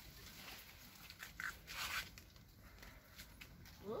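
Faint rustling and soft scuffing from someone stepping into a narrow stone tunnel, with a short swish about two seconds in.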